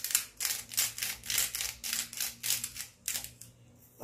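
A hand-twisted salt grinder grinding coarse salt, a fast run of crunchy clicks at about six a second that stops a little after three seconds.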